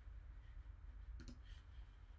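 Near silence with a low steady hum, and a faint computer mouse click a little over a second in.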